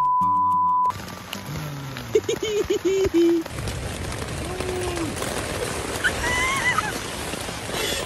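A steady high censor bleep lasting about a second, blanking out a name, followed by people laughing, with high-pitched squealing laughs in the second half.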